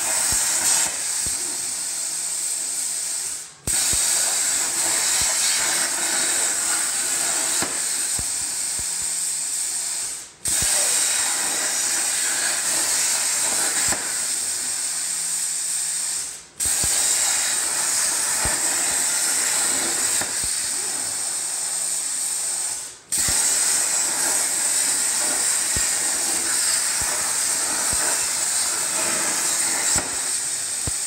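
Hypertherm Powermax 65 plasma torch cutting steel plate on a CNC table: a steady, loud hiss with a high whine over it. Four times it fades out and then cuts sharply back in, as the arc goes out at the end of one cut and is struck again for the next pierce.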